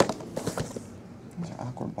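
Cardboard hobby boxes of trading cards being handled and moved about: a sharp knock, then a short rustling scrape.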